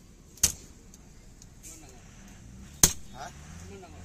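Two sharp chops of a butcher's cleaver through pork onto a wooden tree-stump chopping block, about two and a half seconds apart.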